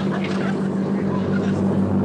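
PT boat engines running at speed with a steady low drone, over the rush of water and spray along the hull.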